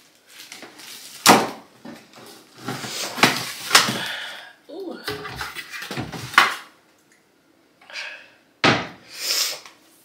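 Kitchen cabinet doors being opened and shut, with rummaging among the things inside, in a search for aluminium foil. There are four sharp knocks, the loudest about a second in, with clattering and rustling between them.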